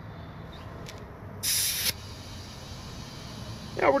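Compressed air hissing in a sharp burst of about half a second as a tire chuck on an air-compressor hose is pressed onto a motorcycle tire's Schrader valve, then a fainter steady hiss as the air flows on into the tire.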